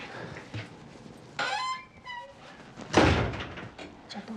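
A door being shut, closing with a loud thud about three seconds in.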